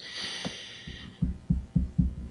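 A faint high hiss for about a second, then a run of soft, dull low thumps, about four a second.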